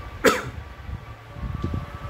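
A man coughs once, a short sharp cough about a quarter of a second in, followed by a few soft low bumps.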